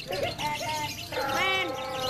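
A lovebird's ngekek: a fast, continuous high chattering song held on without a break. A drawn-out lower pitched call sounds about a second in.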